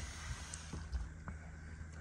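Faint low steady hum with a few soft clicks.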